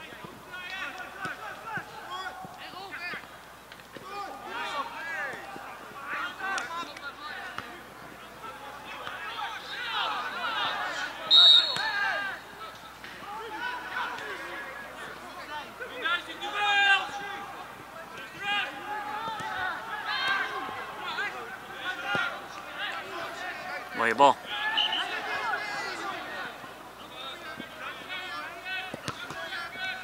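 Outdoor football match sound: players' and spectators' voices calling across the pitch, with ball kicks. A short referee's whistle blast sounds about a third of the way in, and a sharp kick of the ball stands out near the end of the second third.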